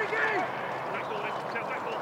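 Players shouting across a football pitch: a short call right at the start and fainter calls about a second in, over a steady hiss.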